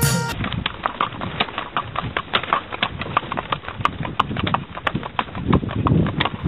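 Horse's hooves clip-clopping on a paved road as it pulls a horse cart, heard from the cart: a quick, uneven run of hoof strikes, several a second.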